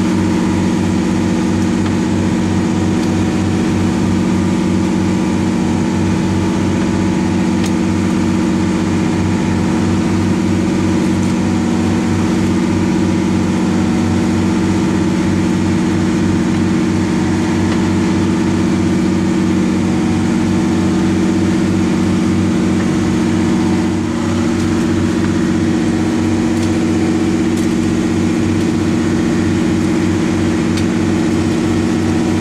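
An inshore fishing boat's engine running steadily, a constant low hum with a fine rapid pulse beneath it, dipping slightly once near the end.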